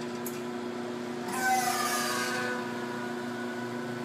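The vacuum pump of an A/C recovery-recharge station (CoolTech 34788) running steadily, pulling a vacuum on a car's freshly sealed A/C system to boil off moisture. It is a steady hum, with a brief hiss swelling up about a second and a half in and fading.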